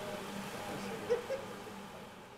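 Two brief vocal sounds about a second in, over a steady low hum and background noise that begin fading out near the end.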